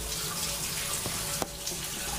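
Bath tap running steadily, water pouring into the tub, with two small clicks about a second in.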